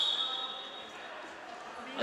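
A high, steady whistle blast, most likely the referee's, fades out in the first second as the bout is stopped. It leaves the echoing noise of a large sports hall with faint voices and dull thuds on the mat.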